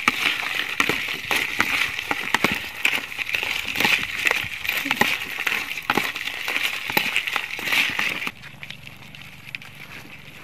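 Small crabs being stirred with a spoon and fingers in a plastic bowl: a run of irregular clicks and rattles from the shells and the spoon knocking the bowl, over a steady high hiss. It stops abruptly about eight seconds in.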